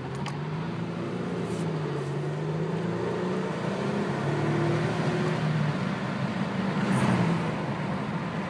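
2003 Toyota Camry engine humming at a fairly steady pitch while the car is driven along, heard from inside the cabin over tyre and road noise.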